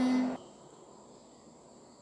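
A girl's singing voice holds the last note of a line, which ends about a third of a second in, followed by a pause with only faint background noise.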